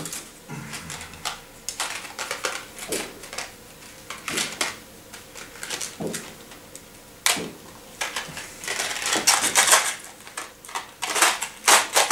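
Rustling and light clicking of a small paper candy box and its wrapping being handled and opened: a string of short crinkles and taps that gets busier near the end.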